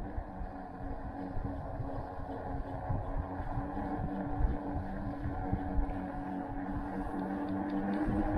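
Fat-tyre electric bike riding on pavement under pedal assist: a steady hum from the rear hub motor and tyres, with low wind rumble on the microphone, growing slightly louder as the bike picks up speed.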